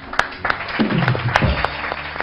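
Studio audience applauding: scattered hand claps over a wash of clapping, with a lower pitched sound sliding down about a second in.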